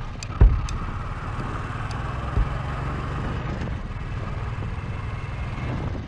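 Royal Enfield motorcycle engine running under way, heard from a helmet-mounted camera with wind and road noise. A sharp thump comes about half a second in and a smaller one about two and a half seconds in.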